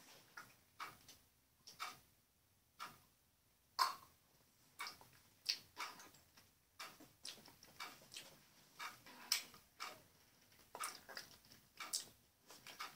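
Faint, irregular small clicks and smacks, a scattered one or two a second, from tasting sour liquid candy squeezed from a plastic tube: mouth and lip sounds and handling of the tube.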